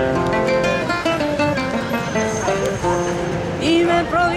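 Nylon-string classical guitar strummed and picked, playing steady chords.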